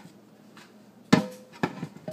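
Fresh blueberries tipped into an empty plastic Vitamix blender jar: one sharp knock about a second in, then two smaller knocks as more berries drop onto the jar's base.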